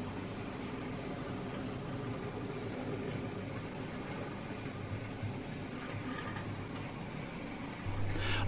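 OO gauge Hornby Class 29 model diesel locomotive running along the track with its freight train: a steady electric motor hum with the faint rolling of wheels on rail.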